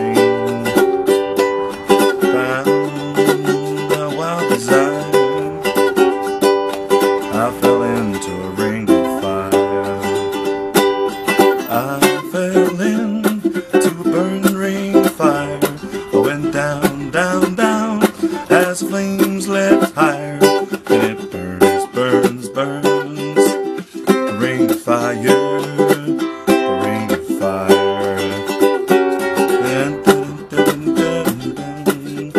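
Kala curly mango tenor ukulele strummed rhythmically, with chords slid into from a fret below and percussive thumb-and-slap strokes between them.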